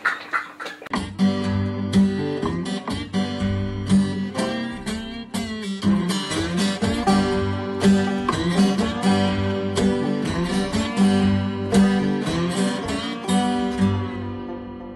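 Intro music: rhythmic strummed acoustic guitar with a steady bass line, starting suddenly about a second in.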